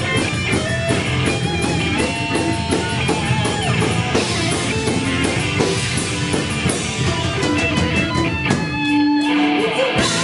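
Live rock band playing an instrumental passage: electric guitars over a drum kit. About nine seconds in, the drums drop out briefly under a held note.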